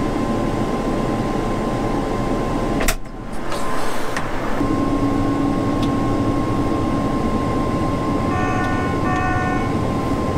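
Combine harvester engine running steadily, heard from inside the cab. A sharp click with a brief dip comes about three seconds in, after which a steady hum carries on, and near the end a cab warning beep sounds twice.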